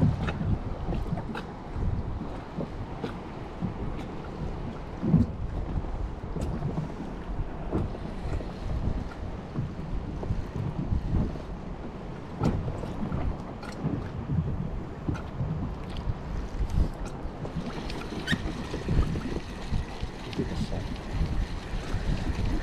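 Wind buffeting the microphone in uneven gusts, over water lapping against a fishing kayak's hull on a choppy sea, with a few faint clicks.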